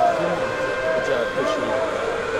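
Indistinct chatter of several voices overlapping in a large, echoing arena, with no single clear speaker, over a faint steady tone.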